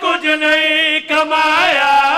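A man's voice chanting a devotional recitation through a microphone in long held notes, with a brief break about a second in.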